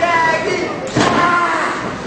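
A single slam on the wrestling ring canvas about a second in, as a wrestler hits his downed opponent. Voices from the crowd yell over it.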